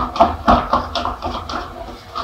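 Metal spoon beating thin cake batter in a stainless steel bowl: quick, irregular scrapes and clinks of the spoon against the bowl, with a few duller knocks.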